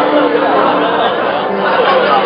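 Many young voices chattering at once, a loud, steady babble of overlapping talk from a crowd of students.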